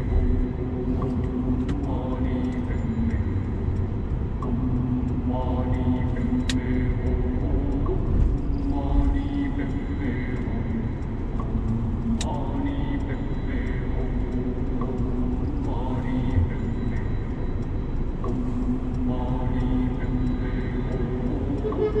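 Steady low road rumble inside a Mercedes-Benz car's cabin as it drives through city traffic. Over it, a voice recurs in long held pitched notes every few seconds.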